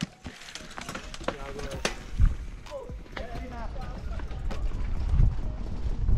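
Mountain bike rolling off down a dirt forest trail, heard from a helmet camera: scattered rattling clicks and a low tyre-and-wind rumble that starts about two seconds in and grows louder as speed picks up.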